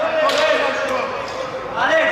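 Players' raised voices calling across a large indoor futsal hall, with a couple of short ball thuds. The loudest call comes near the end.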